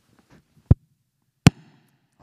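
Two sharp knocks, about three-quarters of a second apart, from a handheld audience microphone being handled just before use.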